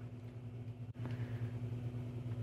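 Steady low hum inside the cab of a 2024 Peterbilt 389 truck, briefly cutting out about halfway through.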